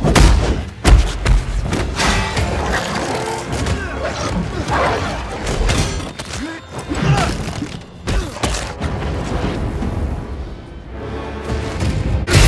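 Superhero film fight soundtrack: a music score under a string of heavy blows, thuds and booms.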